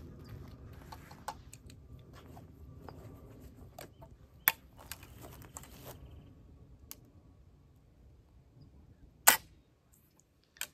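Faint clicks as a .45 caliber flintlock rifle is readied and shouldered, then about nine seconds in a single sharp snap as the flintlock's hammer falls on the frizzen. The rifle does not go off: a misfire.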